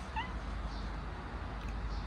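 A domestic cat gives one short, high meow just after the start, over a steady low background rumble.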